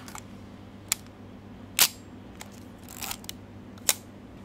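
Olympus Pen F half-frame film camera firing its shutter: sharp mechanical clicks, the loudest a little under two seconds in and another just before the end, with a smaller click about a second in and a softer rasp around three seconds.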